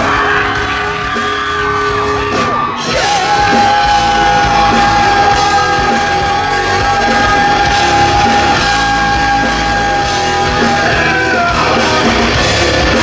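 Live rock band playing loudly with drums and electric guitars. The lead singer belts into the mic, and about three seconds in holds one long high note until near the end.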